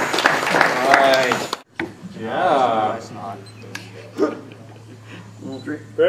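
Spectators talking, with scattered light clicks. The sound cuts off abruptly about one and a half seconds in. After that, more talk and a few faint clicks come over a steady low hum.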